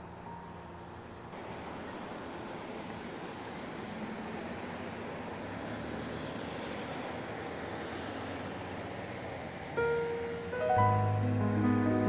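A pickup truck drives past, its road noise swelling through the middle and fading. Background music comes in near the end with held notes and a heavy low bass, louder than the traffic.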